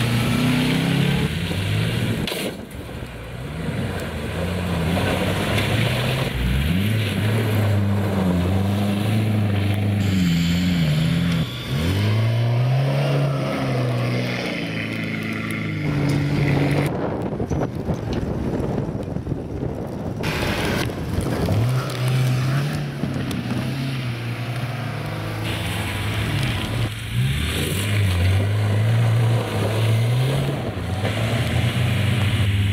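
Classic cars' engines revving up and falling back as they are driven hard through a loose gravel and mud course, one car after another, with gravel and tyre noise underneath. The engine note changes abruptly several times where one car gives way to the next.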